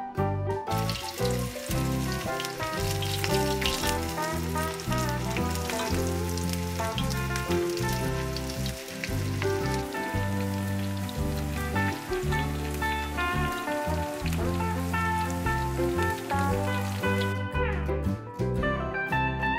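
Breadcrumb-coated cauliflower florets frying in hot oil in a skillet: a dense crackling sizzle, starting about a second in and stopping near the end. Background music with a bass line plays over it throughout.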